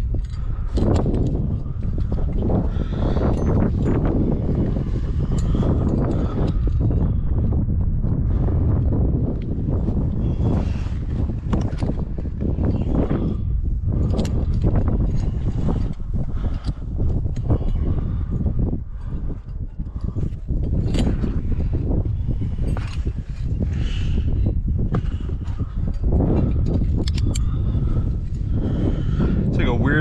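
Steady low rumble of wind on the microphone of a climber's body-mounted camera, with scattered clicks and scrapes of rope, gear and hands on sandstone as the climber moves up the rock.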